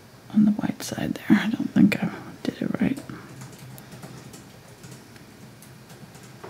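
Low, indistinct speech with a few sharp clicks for about the first three seconds, then quiet room tone with a faint low hum.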